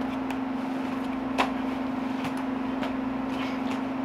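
Steady room hum with a few light clicks and taps of pack and bow gear, the sharpest about a second and a half in, as a hand reaches back over the shoulder toward the bow strapped to the pack.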